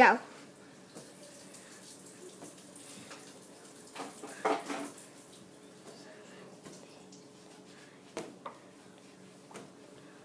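Hands batting a latex balloon up into the air: a few short, sharp taps toward the end, over a faint steady room hiss. A brief voice sound comes about halfway through.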